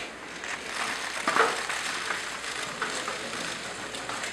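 Many press camera shutters clicking irregularly over the shuffle and rustle of a packed press crowd, with the loudest burst of clicks about a second and a half in.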